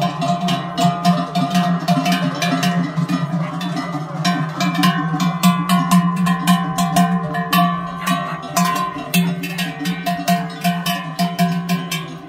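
A large cowbell clanking irregularly on a cow walking past, the strokes thickest midway, over music.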